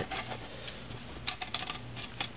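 A few light clicks close together about a second and a half in, over a faint steady low hum: handling noise from a hand on the small metal ramjet tube.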